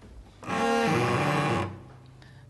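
A cello bowed once, a rough, unpolished note of about a second that drops lower partway through: a beginner's untrained pull of the bow, not yet a pleasant sound.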